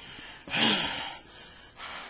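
A man's breathy gasp about half a second in, followed by a softer breath near the end.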